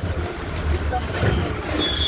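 Busy street noise: a steady low rumble of vehicle engines in traffic, with people's voices chattering in the background.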